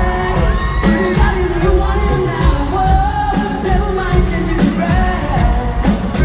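Live pop-rock band with a lead vocal over drums and guitar, played loud and heard from within the arena audience.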